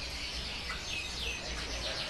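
Caged birds chirping: groups of short, high calls that sweep downward, heard twice, over a low steady hum.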